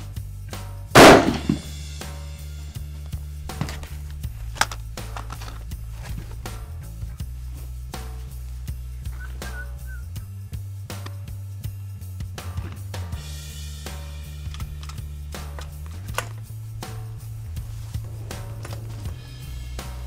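A single shot from a scoped Howa bolt-action hunting rifle about a second in, with a short echo after it. Background music with a steady bass line runs throughout.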